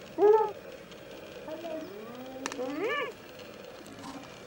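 Spotted hyenas giggling and squealing in a squabble over a carcass. There is one loud arched call just after the start, then a run of calls rising in pitch in the second half. The laugh-like calls are a sign of stress, aggression and competition.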